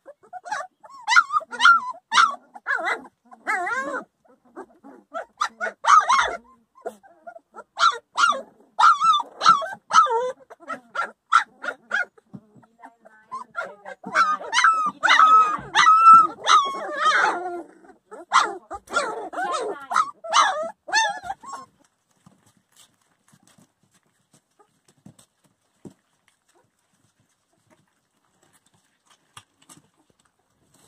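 Young Weimaraner puppies whining and yipping with many short, high calls in bursts, then falling quiet for the last several seconds.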